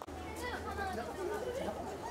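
Several people talking at once, close by and indistinct, with a low steady hum underneath; the sound begins abruptly.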